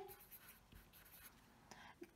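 Near silence with faint scratching of a marker pen writing on paper.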